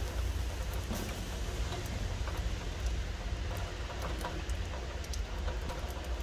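Light rain and dripping water, with scattered drops ticking irregularly over a low, steady rumble.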